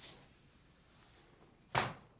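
Faint scratching of writing on a board that fades out after about a second, then a single short, sharp sound near the end.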